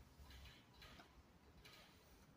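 Near silence, with a few faint short ticks as an oiled intake camshaft is turned by hand in its bearing journals to mesh its gear with the exhaust camshaft's gear.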